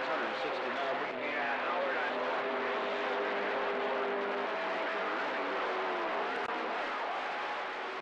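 CB radio receiver hissing with steady band static, with faint garbled voices of distant stations and a few steady heterodyne whistles under the noise.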